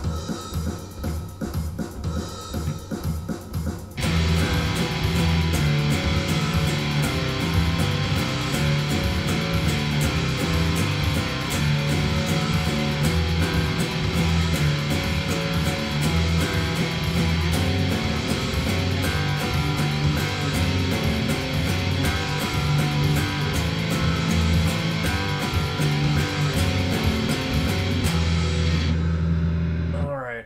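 Electric guitar playing an eighth-note chord riff at 120 beats per minute along with a Guitar Pro backing track of drums and bass. The full music comes in about four seconds in, after a few seconds of even ticks, and stops just before the end.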